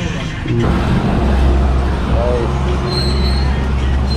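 Steady low engine rumble of a road vehicle, starting about half a second in and holding to the end.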